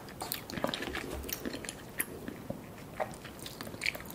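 A person chewing a mouthful of food, with many small, sharp wet clicks and smacks.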